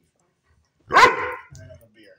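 A husky-type dog gives one short, loud vocal 'talking' call about a second in, its pitch rising, followed by a faint low grumble. The dog is vocalising to demand a walk.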